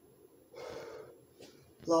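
A man's sharp gasping breath, about half a second long, as he loses his balance partway through a squat.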